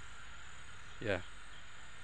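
Steady high-pitched chorus of insects, such as crickets, running as a continuous background; a man says 'yeah' once about a second in.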